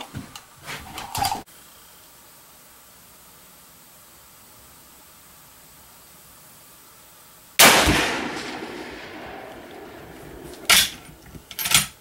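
A single rifle shot from a Savage 99 lever-action rifle about seven and a half seconds in, sudden and loud, its report dying away over about three seconds. Near the end come sharp metallic clicks as the lever is worked to eject the spent case.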